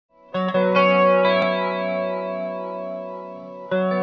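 Electric guitar played through a Chicago Iron Tycobrahe Pedalflanger flanger pedal. A chord is struck about a third of a second in and rings out with a wavering, sweeping swirl as it fades. A second chord is struck near the end.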